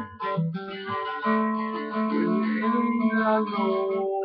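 Acoustic guitar being strummed, its chords ringing on.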